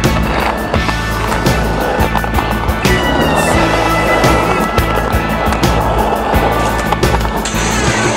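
Skateboard wheels rolling on concrete, with the clack of the board on tricks, over music with a steady beat.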